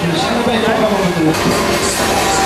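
People talking: voices and chatter, with no clear tool or machine sound standing out.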